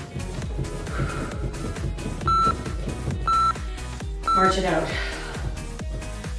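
Interval workout timer giving three short, identical countdown beeps a second apart to mark the end of a round, over upbeat workout music. A falling sweep of sound follows the last beep.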